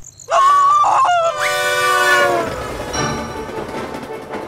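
Steam locomotive whistle sound effect from a cartoon: a loud chord of several notes blown suddenly, then sounded again about a second later and fading, before music takes over.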